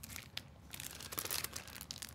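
Plastic packaging crinkling in the hands, in scattered faint crackles: a shrink-wrapped card deck and clear zip bags of small wooden game pieces being handled.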